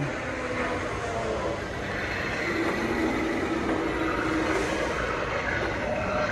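Steady store background noise: a continuous hum with a few faint tones in it.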